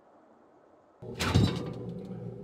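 Near silence for about a second, then a sudden thump, followed by a steady low hum.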